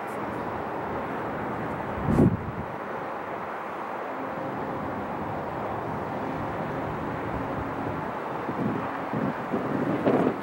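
Steady distant city traffic hum with a faint engine drone, broken by a sharp low thump about two seconds in and a few softer bumps near the end.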